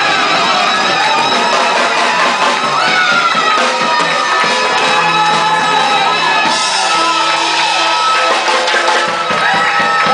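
Live funk band playing with saxophones at the front over drum kit and electric guitar, with audience members shouting and whooping along.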